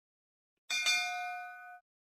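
A notification-bell chime sound effect: a bright ding struck twice in quick succession, ringing for about a second and then cutting off suddenly.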